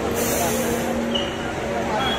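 A city bus's air brakes releasing: a sharp hiss lasting just under a second that cuts off suddenly, over the steady din of street traffic and crowd voices.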